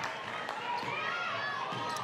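Live basketball court sound: a ball bouncing a couple of times on the hardwood floor, over a low arena crowd murmur.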